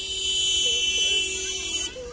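A vehicle horn sounding in one long, steady, buzzy blast of nearly two seconds that cuts off sharply near the end.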